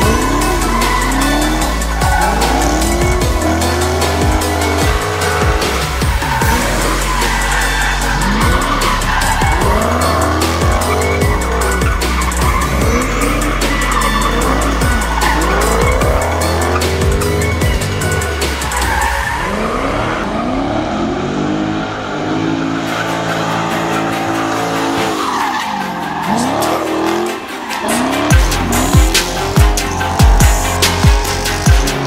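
Dodge Charger Scat Pack's 6.4-litre HEMI V8 revving up and down again and again with tyre squeal as it drifts, with electronic background music mixed underneath.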